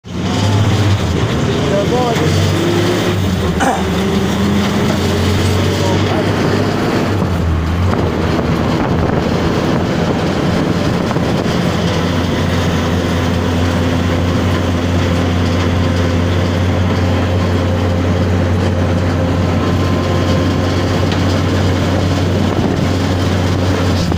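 Small motorcycle engine running steadily under way, with wind rushing over the microphone; the engine note shifts briefly about seven seconds in.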